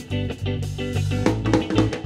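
Live band playing an instrumental passage between sung lines: electric guitar chords over a bass line and a drum kit beat.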